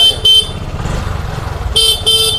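A TVS XL100 moped's electric horn gives two quick short beeps, then another near the end, over the low steady putter of its idling engine, which has just been self-started.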